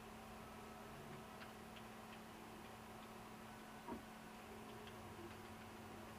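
Vector 3 3D printer at work, faint: short steady whining notes from the motors as the print head moves, over a steady low hum, with scattered light ticks and one louder click about four seconds in.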